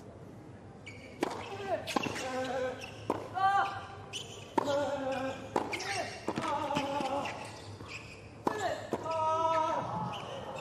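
Tennis rally on a hard court: a serve, then racket strikes on the ball about once a second. Each strike is followed by a player's grunt.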